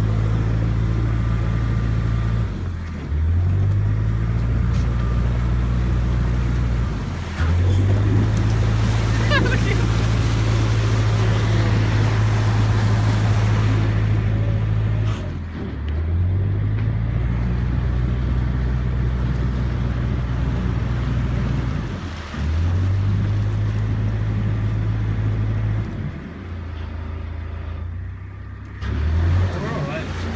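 Narrowboat diesel engine running, its revs dropping and picking up again about five times as the throttle is eased off and opened while the boat is steered through a bridge approach.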